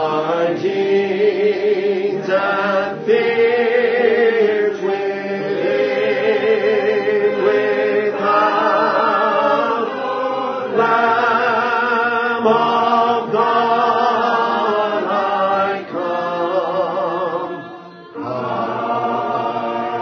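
A congregation singing a slow hymn: long, held sung lines with a slight waver, broken by short pauses between phrases.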